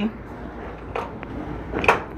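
Low steady kitchen background noise with a faint knock about a second in and a sharper clack near the end: cookware being handled, with a utensil knocking against the glass baking dish of browned ground beef.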